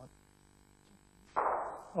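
A driven bowl crashes into the bowls at the head: one sudden clatter about halfway through that dies away over about half a second.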